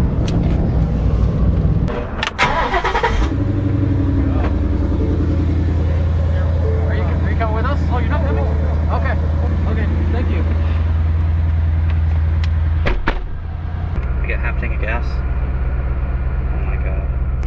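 Ford Mustang GT's 5.0 V8 started about two seconds in with a short cranking burst, then idling steadily. Near the end there is a sharp knock, and after it the idle goes on with a lower, different tone.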